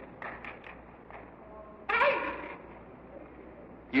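A pause in an old hall recording: faint short murmurs, then one brief spoken sound about two seconds in that echoes in the hall, over steady recording hiss and a low hum.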